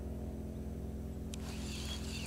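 A steady low motor hum, like an engine idling, with a short click and a soft rustle near the end.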